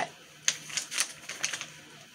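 A quick run of light clicks and taps from handling, about eight in just over a second.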